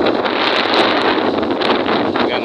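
Wind buffeting a microphone moving at road speed: a loud, steady rushing noise with frequent brief gusty pops.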